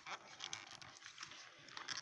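Faint rustling and scratching of a small toy doll's cape being pulled and worked off by hand, a tight fit, in short scrapes and ticks.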